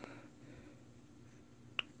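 Quiet room tone, broken near the end by a single short, sharp click.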